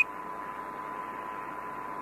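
Steady hiss of the Apollo air-to-ground radio channel between transmissions, with a faint steady tone underneath.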